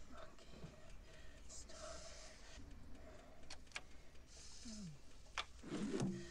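Quiet, slow breathing with a few sharp clicks, over a faint low hum.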